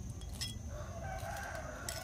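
A rooster crowing faintly: one drawn-out call lasting about a second and a half, beginning about half a second in. A small click comes just before it.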